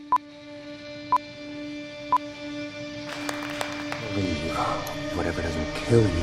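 Film countdown leader beeps: three short high beeps, one a second, over a steady low hum. Then music swells and a voice comes in over it near the end.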